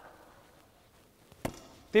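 A basketball pass: one sharp slap of the ball about one and a half seconds in.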